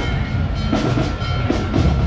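Marching band playing, with drums keeping a steady, repeating beat under low brass.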